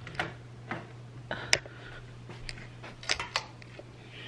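Camera handling noise: scattered light clicks and knocks as a camera is set down and positioned, the sharpest about a second and a half in and a few more near the three-second mark, over a steady low hum.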